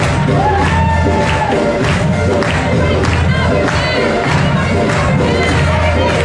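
Loud music with a steady beat, with a crowd of voices cheering and children shouting over it.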